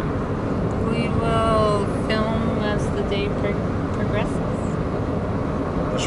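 Steady road and engine noise inside a moving car's cabin. A few short vocal sounds with gliding pitch rise over it during the first few seconds.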